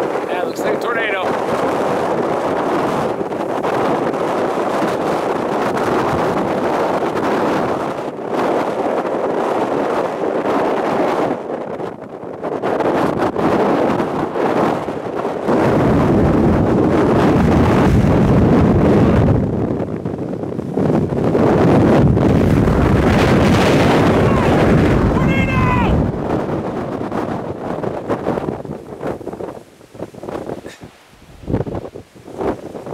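Strong wind buffeting the microphone during a storm. Midway a deeper, louder rumble comes in with it, from a vehicle driving fast on a dirt road; it stops about four seconds before the end and the wind drops lower.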